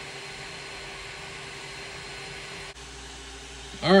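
Creality Ender 3D printer's cooling fans whirring steadily with a faint steady tone. About two-thirds through, the sound switches abruptly to a lower, steady hum.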